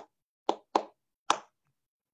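Three sharp percussive strikes, unevenly spaced, each dying away quickly, ending about a second and a half in.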